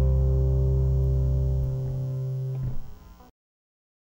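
Final chord of a rock and roll song on guitar and bass, held and ringing out. The lowest notes drop away a little under two seconds in, and a brief noisy burst comes near the end before the sound cuts off suddenly to silence.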